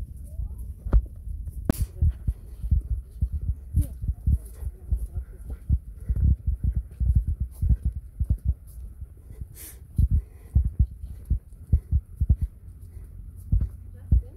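Irregular low thumps and rumble on a handheld phone's microphone, the kind of buffeting that wind and handling while walking put on the mic, with a few sharp clicks mixed in.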